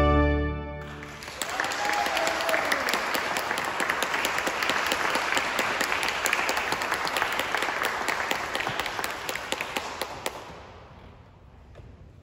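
Trumpet and pipe organ end on a held chord that cuts off about a second in, followed by audience applause that runs for about nine seconds and then dies away.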